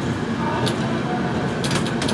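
Running noise of an express passenger train heard from inside the coach as it pulls into a station: a steady rumble and rattle of wheels on track, with a few light clicks about a third of the way in and again near the end.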